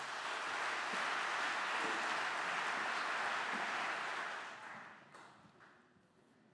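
Audience applauding, swelling quickly at the start, holding steady, then dying away about five seconds in.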